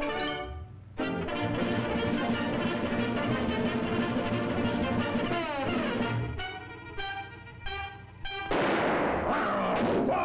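Brass-led orchestral cartoon score: a held chord, a falling slide about halfway through, then short staccato notes, and a sudden loud noisy crash near the end.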